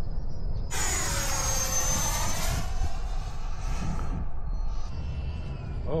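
Electric ducted-fan RC jet making a fast pass: its high fan whine cuts in suddenly about a second in, drops in pitch as it goes by, and fades away over the next few seconds. Low wind rumble on the microphone underneath.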